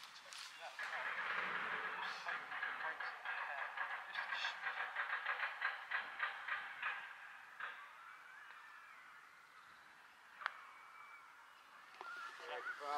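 Faint, choppy voices in the background for the first several seconds. Later there is a faint wavering whistle, and one sharp click comes about ten and a half seconds in.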